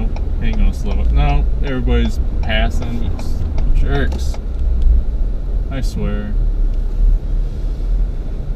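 Steady low rumble of a Ford F-350 pickup's engine and tyres heard from inside the cab while driving, with indistinct speech over it in short stretches.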